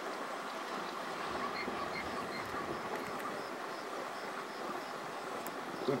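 Steady low outdoor noise, with a few faint, short high-pitched calls in the first half.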